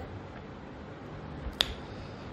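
A single short, sharp click about one and a half seconds in, over a faint steady hiss.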